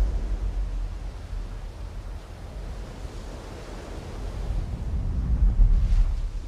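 Sea surf breaking and washing on a beach with wind, under a deep low rumble that eases mid-way and then swells to its loudest near the end.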